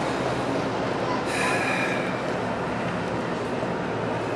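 Steady background noise of a large indoor horse-show arena, with one short high-pitched squeal about a second in.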